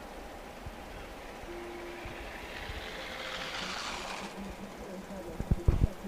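Ski jumper's skis hissing down the in-run tracks, growing louder over a couple of seconds and cutting off suddenly at the takeoff. A few low thumps follow near the end.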